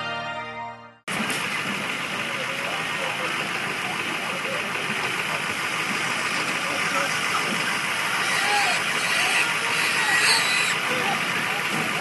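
A station ident jingle cuts off about a second in. It is followed by a steady roadside din of idling vehicles and traffic, with faint voices in it.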